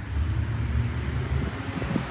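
Low, steady rumble of a car driving past on a city street, with some wind noise on the microphone.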